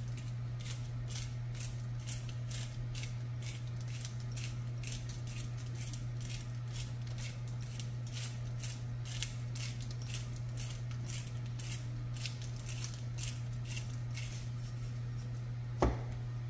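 Rosemary crumbled and sprinkled by hand over raw chicken, a crisp rustle repeating about three times a second, over a steady low hum.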